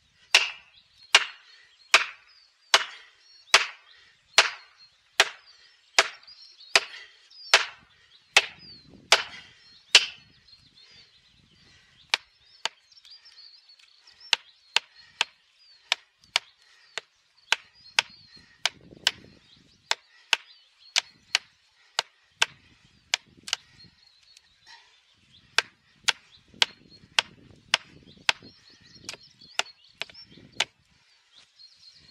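A long-handled hammer driving plastic felling wedges into the cut of a large tree: about a dozen heavy, evenly spaced blows for the first ten seconds, then quicker, lighter taps about two a second with short pauses.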